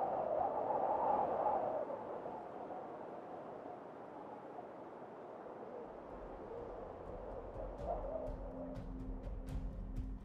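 Soft ambient intro music. A hazy mid-pitched pad swells in the first two seconds and then fades. About six seconds in, a low hum and a steady low held tone come in, with faint sparse ticks near the end.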